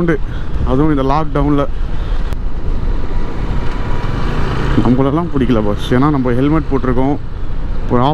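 A man's voice singing in two short wavering phrases, about a second in and again from about five seconds, over the steady running of a Yamaha FZ25's single-cylinder engine and wind noise.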